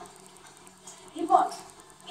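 A single short spoken utterance about a second in, played through a TV's speaker, over a faint steady hum.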